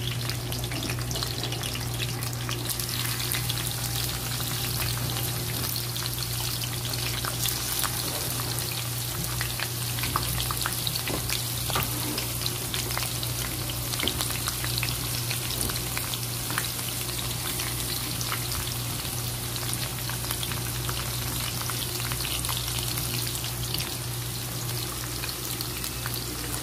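Sliced onions frying in hot oil in a wok, a steady sizzle with fine crackles that turns brighter and hissier about three seconds in.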